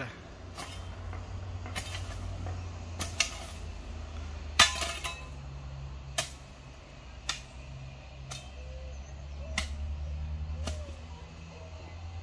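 A series of sharp knocks, roughly one a second, the loudest about four and a half seconds in, over a low steady hum.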